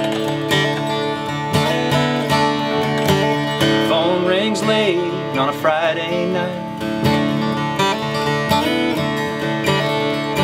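Early-'70s Martin D-35 dreadnought acoustic guitar strummed in a steady rhythm of ringing chords. A man's singing voice comes in over it about four seconds in.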